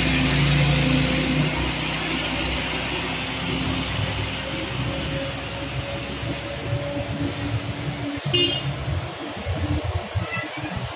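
Heavy diesel truck engine running under load on a climb, mixed with passing traffic: a low, steady drone that slowly fades. A short horn toot sounds about eight seconds in.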